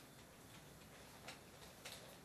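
Near silence: room tone with two faint short clicks, one past the middle and one near the end.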